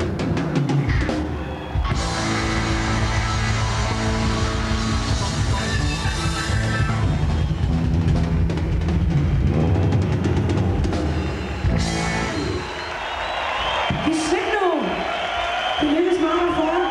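A live rock band playing, with drum kit, bass, guitar and keyboards all going. About twelve seconds in, the full band drops away and a thinner, quieter stretch follows, with a sliding pitched sound near the end.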